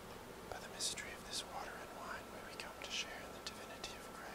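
A man's faint whispered prayer, a few soft hissing syllables, over a low steady room hum: the priest's quiet prayer said while mixing a little water into the wine at the offertory.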